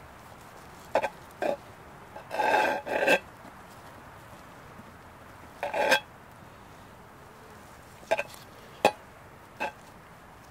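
Steel knife and fork cutting a pot roast in a cast iron pan: a series of short scrapes and clicks of the blade and fork against the iron, spaced a second or more apart.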